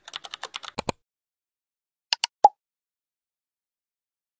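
Computer keyboard typing sound effect: a quick run of key clicks in the first second, then two more clicks and a short ping about two and a half seconds in.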